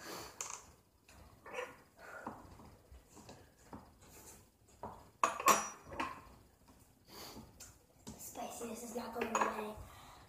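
Metal spoons clinking and scraping, with one sharp clink about five and a half seconds in.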